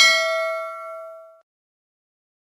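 A notification-bell sound effect: one bell ding rings out and fades away, gone by about a second and a half in.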